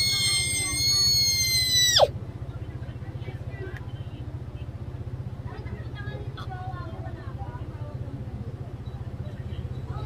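A young girl's high-pitched squeal, held for about two seconds and ending in a sharp drop in pitch, over a steady low hum.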